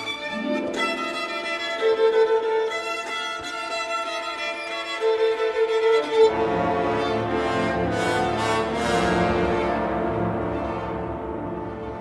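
Solo violin playing long held notes in a concerto with orchestra. About six seconds in, the orchestra comes in fuller and lower underneath, swells, and then fades toward the end.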